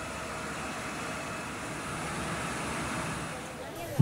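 Fire engines running steadily at a fire scene, an even engine noise with no distinct events.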